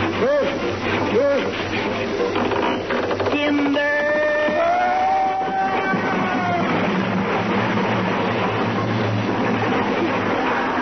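Vintage radio comedy broadcast: voices and sound effects for about the first second and a half, then a few held musical tones, then from about seven seconds a steady rush of studio audience applause.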